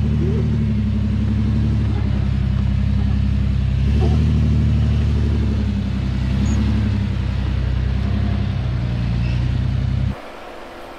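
Jeep Cherokee XJ engine running at low revs under load as the Jeep crawls over slickrock, a steady low drone that rises briefly about four seconds in.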